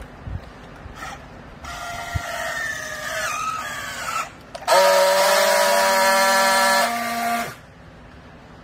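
Battery-powered handheld strapping tool working on a plastic strap around a bale. First comes a motor whine of about two and a half seconds that sinks slightly in pitch as the strap is tensioned. After a short pause a louder, steady whine runs for about three seconds while the tool friction-welds the strap joint, then it stops sharply.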